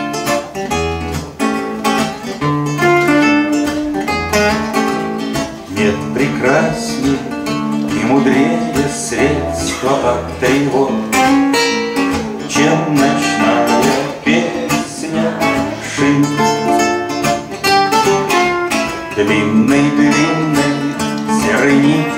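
Two acoustic guitars, one of them nylon-string, playing a plucked instrumental introduction to a song.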